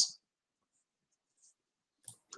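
Near silence after the last syllable of a man's speech, with only a couple of very faint high ticks.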